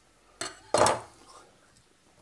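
Kitchen knife cutting through a piece of poached pheasant thigh onto a wooden chopping board: a light knock, then a short, louder scrape of the blade against the board.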